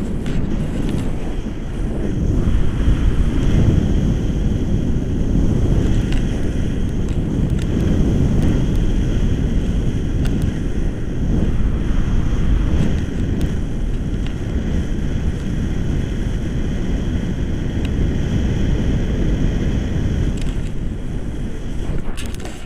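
Wind buffeting the microphone of a camera carried in flight on a tandem paraglider: a steady low rumble that swells and eases a little.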